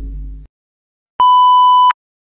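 A single steady electronic beep tone lasting under a second, the classic censor-bleep sound effect, starting a little past halfway, after the tail of some low rumbling music dies out.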